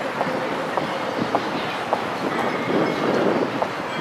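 City street ambience: a steady hum of noise with scattered, irregular sharp clicks.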